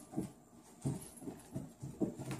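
Small dogs at play, giving short low vocal sounds, about five in quick succession.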